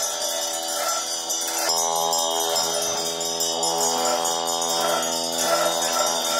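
Tibetan Buddhist ceremonial music: sustained droning tones with bells and cymbals ringing and shimmering over them. The held tones shift to a new pitch about two seconds in.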